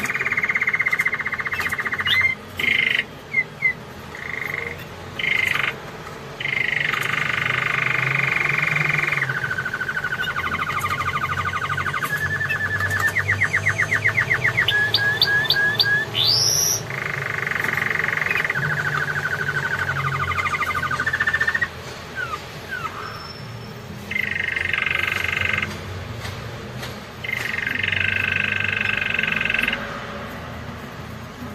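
Canary singing: long rolling trills one after another, each phrase held for a few seconds and then switching to a new pitch, with a run of quick repeated notes and rising whistles about halfway through.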